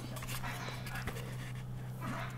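Quiet room sound with a steady low hum and faint television sound across the room, as picked up by a handheld recorder's microphones.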